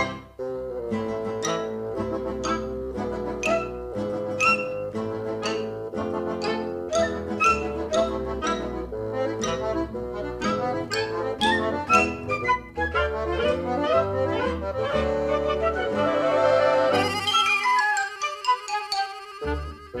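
Instrumental background music: a steady run of pitched, sharply struck notes over a bass line. About three seconds before the end the bass drops out and the music thins to held tones.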